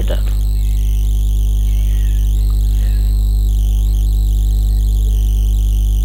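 A steady low hum that does not change, with faint background music over it.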